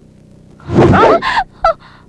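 A loud honking cry that bends in pitch, lasting under a second, followed about half a second later by a short second honk.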